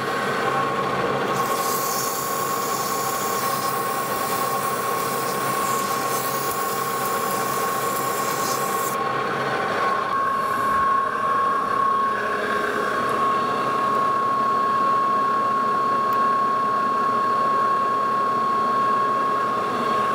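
Lodge & Shipley metal lathe running with a steady, high-pitched whine. From about a second and a half in until about nine seconds a hiss rides over it: emery cloth polishing the spinning steel shaft down to final size.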